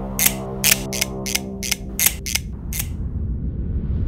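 A run of sharp metallic clicks, about three a second, of a folding titanium multi-tool's blade and tools snapping open and locking. Under them runs a low steady drone that fades out about two and a half seconds in.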